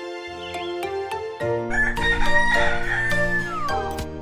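A rooster crowing cock-a-doodle-doo over light background music: one long call starting about a second and a half in, sliding down in pitch at its end.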